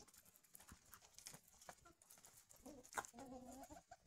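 Faint clicks of chickens and ducks pecking at food on the ground. Near the end comes a faint, drawn-out wavering cluck from a hen.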